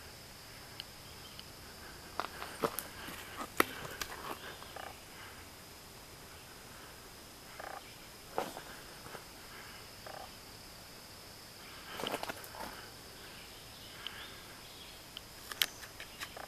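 Faint summer woodland ambience: a steady high-pitched insect drone, with scattered light clicks and rustles from footsteps on a dirt trail.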